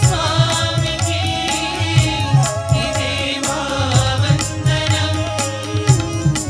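Male voices singing a Telugu devotional song, with hand drums keeping a steady beat under the melody.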